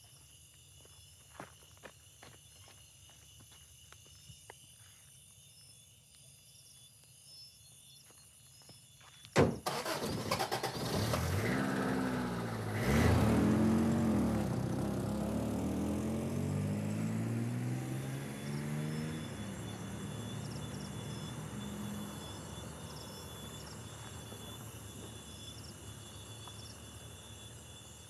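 Faint steady insect chirring with a few small clicks. About nine seconds in, a pickup truck's engine starts suddenly and revs as the truck pulls away, its note rising and falling through the gears, then fading steadily into the distance.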